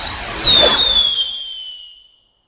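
A high whistling tone, with a fainter second whistle above it, glides steadily downward and fades away over about two seconds. It comes over a noisy rushing wash, right after a sharp hit: a film sound effect following a bloody strike.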